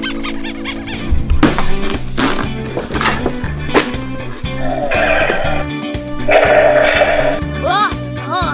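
Background music with a steady beat, overlaid by several sharp hits in the first half and two rasping noise bursts of about a second each in the middle.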